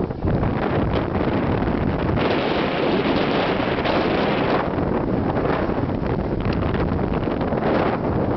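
Wind buffeting the camera's microphone from a moving vehicle: a loud, steady rush of noise.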